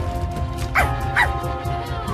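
Cartoon dog yipping twice, two short high yelps less than half a second apart, over background music.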